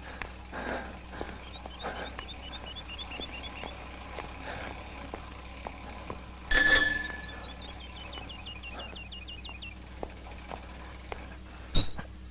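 A bicycle bell rings once, loud and bright, about six and a half seconds in, and fades over about half a second; a shorter metallic click comes near the end.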